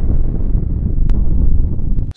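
Loud, deep rumbling intro sound effect, like a smoke-blast or explosion, with no tune in it, following a fading music chord.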